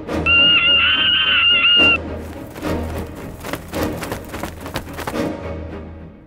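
Soundtrack music: a loud, high, wavering whistle-like tone for the first two seconds, then a run of quick clicks and taps over a low steady bed.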